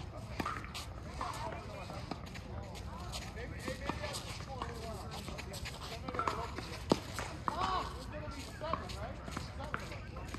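Tennis ball struck by rackets and bouncing on a hard court during a rally, a handful of sharp pops, the loudest about seven seconds in, over voices talking in the background.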